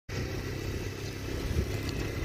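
ATV engine running steadily as it drives along towing a small wagon, a low rumble.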